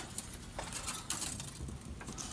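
Thin snare wire being handled and worked free of a small knot: faint, irregular light clicks and metallic rustling.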